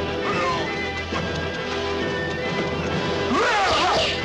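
Film score music playing under a sword fight, with crashing hit sound effects and a sound that glides up and down in pitch near the end.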